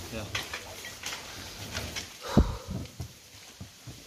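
Handling noises from an inflatable life raft being tied off: rustling, small knocks and one louder thump a little over two seconds in, under faint low voices.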